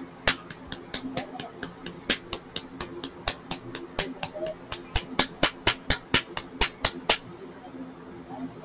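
Glass nail polish bottle being shaken hard, its mixing ball clicking sharply against the glass about four or five times a second as it mixes mica powder into clear polish. The shaking stops about a second before the end.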